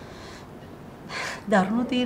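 A short, sharp intake of breath about a second into a pause in conversation, followed by a woman starting to speak.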